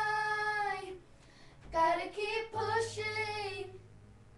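A child singing without accompaniment: one long held note for about the first second, then after a short gap another sung phrase with drawn-out notes.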